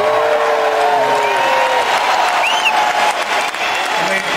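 A large arena crowd applauding and cheering steadily, with long drawn-out cheers in the first two seconds.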